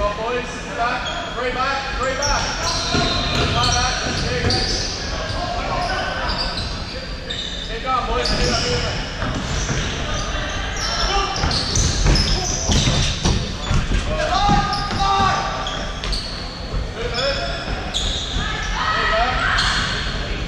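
Futsal being played on a wooden indoor court: the ball kicked and bouncing off the floorboards, with players calling out to each other, echoing through a large sports hall.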